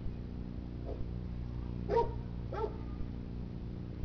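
Two short bark-like yelps about half a second apart, over a steady low hum.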